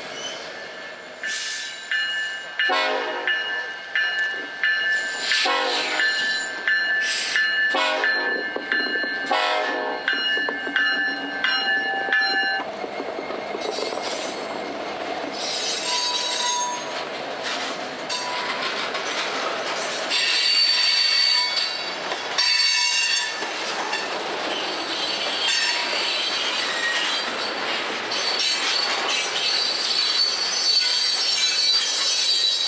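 Freight cars rolling on steel rails with steel wheels squealing. For the first dozen seconds a steady high squeal comes with a sharp clank about every one and a half seconds. Then the sound changes to a steady rolling rumble with shifting squeals as covered hopper cars pass close by.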